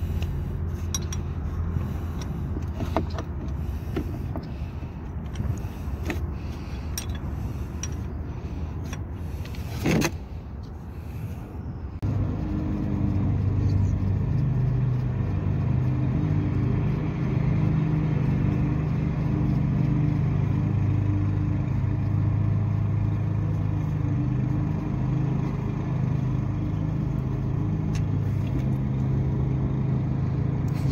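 A steady low motor drone, louder and more even from about twelve seconds in, with scattered clicks and a sharp knock about ten seconds in as a wrench works at the drain plug under a motorcycle's oil pan.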